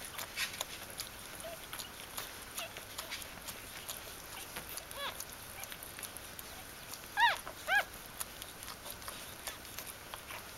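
Newborn Bichon Frise puppies squeaking while nursing: a few faint short squeaks, then two louder squeals in quick succession about seven seconds in. Small wet clicks from suckling run underneath.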